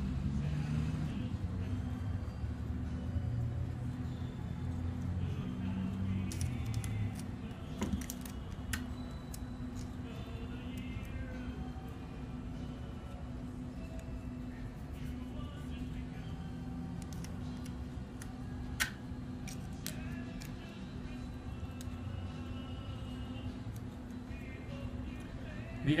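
Quiet background music over a steady low hum, with a few sharp clicks and rustles of cardstock and scotch tape being handled, the sharpest about nineteen seconds in.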